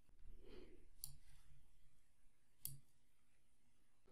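Two faint computer mouse clicks about a second and a half apart, over near-silent room tone.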